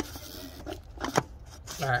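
Plastic oil filter cap and cartridge being fitted into the oil filter housing of a 6.0 Powerstroke diesel: a few short clicks and scrapes of plastic on plastic, the sharpest a little after a second in.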